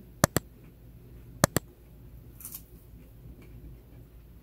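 Two quick double clicks, the first just after the start and the second about a second and a half in: mouse-click sound effects of an on-screen like-button and notification-bell animation.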